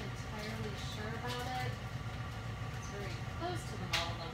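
Faint, indistinct voice over a steady low hum, with one sharp click at the very end.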